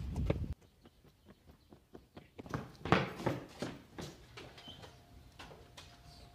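Footsteps of two men running on hard ground: an uneven series of sharp steps, loudest about midway. Wind noise on the microphone is heard briefly at the very start.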